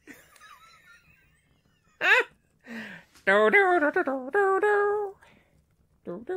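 A person's voice sings a short wordless tune of a few held notes, stepping up and down in pitch. Before it comes one brief falling vocal cry.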